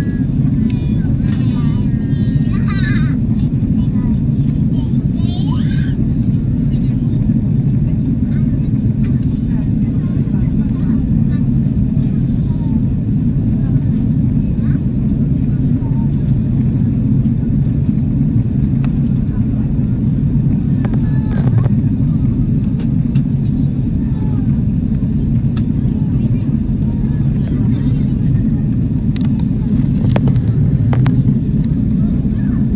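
Steady cabin noise inside an Airbus A330 airliner in flight: a loud, even low rumble of the engines and airflow. Faint voices come through in the first few seconds.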